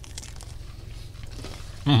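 A man biting into and chewing a slice of pizza, faint soft mouth and crust sounds over a low steady hum, ending with an appreciative "mm".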